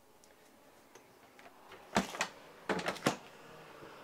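Refrigerator doors being shut and latched: a quiet stretch, then a quick cluster of several sharp clicks and knocks about two seconds in, lasting about a second.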